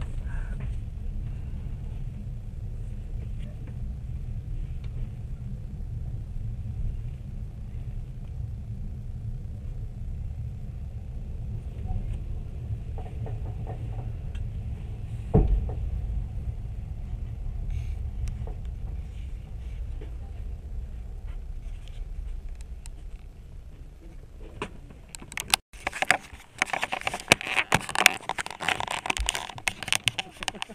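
Steady low rumble heard from inside a stopped passenger railway carriage, with a single sharp knock about halfway through. Near the end it cuts abruptly to louder, busier outdoor noise.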